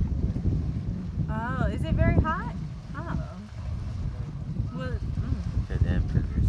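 Wind buffeting the microphone in a steady low rumble. A few short voices come through about a second in and again near the end.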